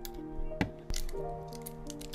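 Soft background music with a few sharp clicks, the loudest about half a second and a second in, from an AA battery being handled against the plastic Logitech M350 Pebble mouse.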